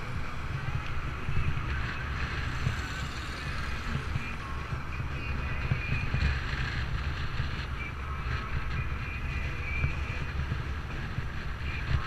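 Wind buffeting the microphone of a camera on a moving bicycle, a steady low rumble, with road and passing traffic noise underneath.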